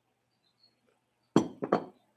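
Ceramic coffee mug set down on a hard surface: one sharp clink and two quicker knocks close after it, near the end.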